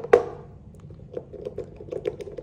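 Metal pliers set down on a whiteboard with one sharp clack just after the start, followed by faint small clicks of the plastic model pieces being handled.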